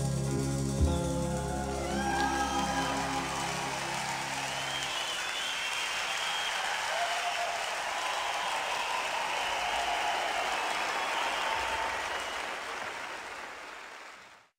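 A live band's last held chord rings out and dies away over the first few seconds. It gives way to audience applause and cheering, which fades out near the end.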